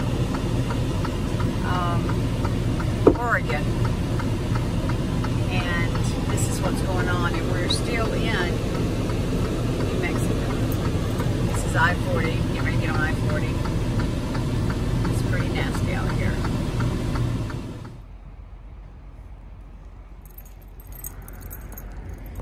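Steady low drone of a semi truck's engine and road noise heard from inside the cab, with faint talking over it. It cuts off abruptly about eighteen seconds in, leaving a much quieter background.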